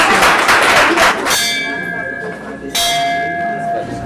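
Applause dying away about a second in, then a bell struck twice, about a second and a half apart, each stroke ringing on with a clear steady tone.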